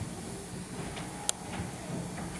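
Room noise in a large hall: a steady low hum and hiss, with one sharp click a little past halfway.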